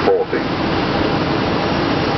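Steady rush of airflow and engine noise in an Airbus A320 cockpit on short final. A brief automated radio-altimeter height callout sounds right at the start.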